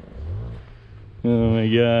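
Two-stroke motorcycle engine revving: a short rise in revs, then just over a second in it jumps to loud, steady high revs. The rider is holding the revs up to climb a steep, slippery snow slope, with the rear wheel sliding.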